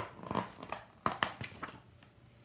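Pages of a picture book being turned by hand: several short paper rustles and flicks.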